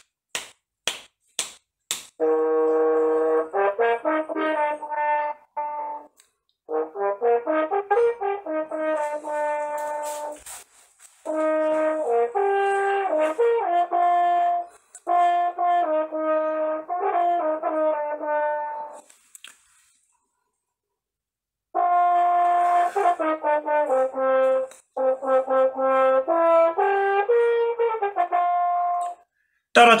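A few evenly spaced finger snaps count in, then a French horn plays a passage in phrases with quick note changes, short breaks for breath and a longer break about two-thirds of the way through. It is heard over a video call.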